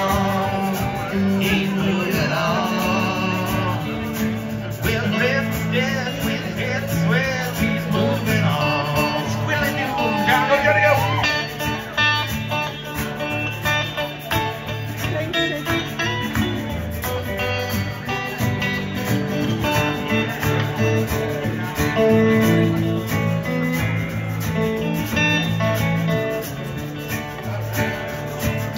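A small country band's instrumental break, with dobro and electric guitar playing lead lines full of sliding, bending notes. A washboard keeps a steady scraping rhythm underneath.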